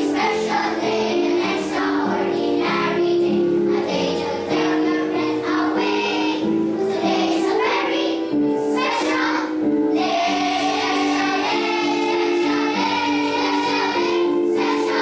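Children's choir singing a song over a musical accompaniment, with held notes that move from phrase to phrase and no pauses.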